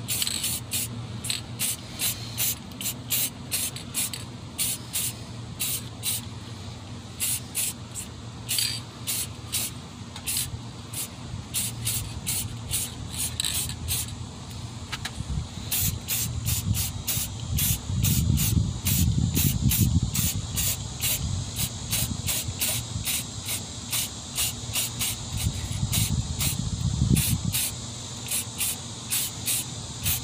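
An aerosol can of chrome spray paint hissing in short, rapid pulses as paint is misted onto a brake caliper. A low rumble swells in about two-thirds of the way through.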